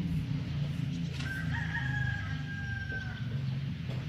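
A rooster crowing: one drawn-out call of about two seconds, starting about a second in. A steady low hum runs underneath.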